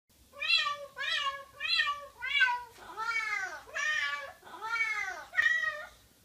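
A domestic cat meowing repeatedly: four short meows in quick, even succession, then four longer, drawn-out meows that rise and fall in pitch.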